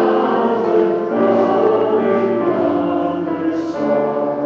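Church choir and congregation singing a hymn with instrumental accompaniment, in long held notes that change pitch every second or so. It is the entrance hymn as the priest processes in.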